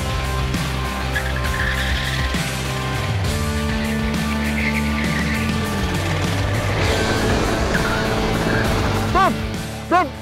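Go-kart engines running at racing speed with background music laid over them.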